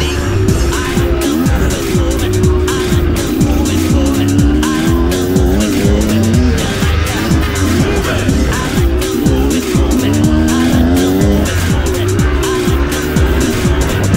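Kawasaki KX100 two-stroke single-cylinder engine revving up and down under way on a dirt trail, its pitch repeatedly rising and falling with the throttle and gear changes.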